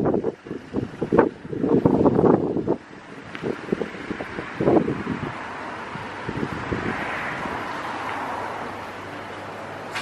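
Wind buffeting the microphone in irregular gusts, then a steady rush of distant traffic that swells and fades again.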